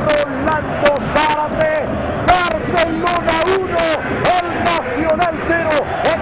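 Television football commentator speaking fast and excitedly without a break, in a high, raised voice.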